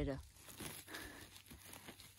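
Faint crinkling and rustling of dry grass and moss as a gloved hand reaches in among the mushrooms.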